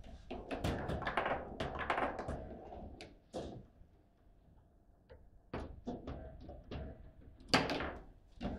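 Foosball table in play: the hard ball clacks and thuds against the plastic players and the table. There is a rapid run of knocks for the first three seconds or so, then a lull, then scattered knocks and one loud hit near the end.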